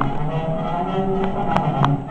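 Film soundtrack music from a television's speaker, with low sustained notes and a few faint clicks in the second half.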